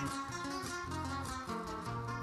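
Acoustic guitars playing the instrumental interlude of a Panamanian décima, with strummed chords over a bass line that changes every half second or so and no voice.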